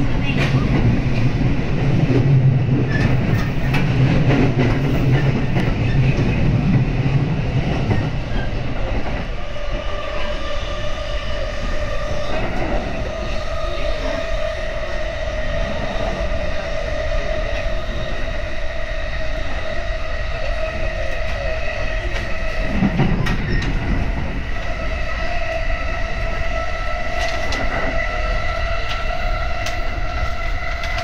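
Electric commuter train running along the line, heard from inside the passenger car: a low rumble that drops away about eight seconds in, then a steady whine that rises slightly in pitch toward the end, with scattered clicks of the wheels over rail joints.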